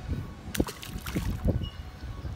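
A small bass splashing into the water as it is released, a short sharp splash about half a second in followed by a few smaller splashes and drips.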